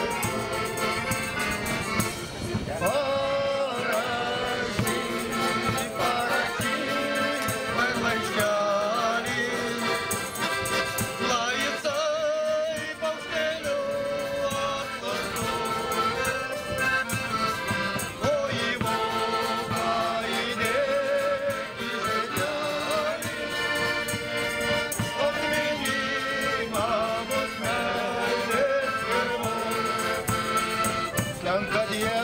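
Lithuanian folk kapela playing a tune on two piano accordions with a bass drum keeping the beat, and men's voices singing along.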